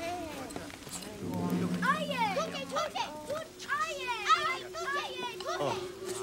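Several high-pitched voices whooping and calling over one another, their pitch swooping quickly up and down, from about a second and a half in until just before the end, over a low steady drone.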